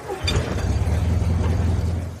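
A motor vehicle driving by on a rain-wet street: a steady low engine rumble under the hiss of tyres on wet pavement. It swells just after the start and fades right at the end.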